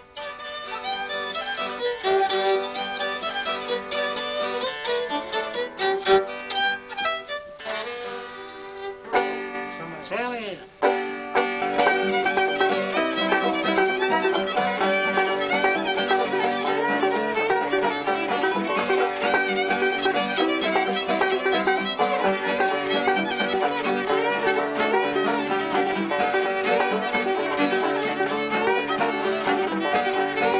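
Old-time fiddle tune on fiddle with banjo. The playing breaks off briefly about ten seconds in, then comes back fuller and louder.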